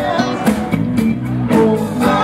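Live band playing an up-tempo number: drum kit, electric bass and guitar, with steady drum strikes under sustained notes.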